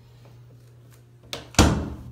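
An interior hinged door is pushed shut: a light click, then a loud thud as it closes into its frame, about a second and a half in. A steady low hum runs underneath.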